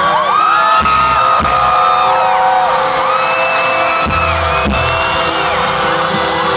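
Live rock band playing through a stadium sound system, recorded from among the crowd, with audience voices whooping over the music.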